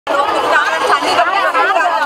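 Many schoolgirls' voices chattering at once in a dense babble of overlapping talk.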